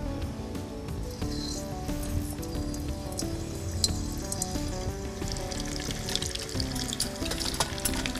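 Breadcrumb-coated prawns sizzling as they go into hot oil in a frying pan, the crackle of frying growing denser about five seconds in, under background music.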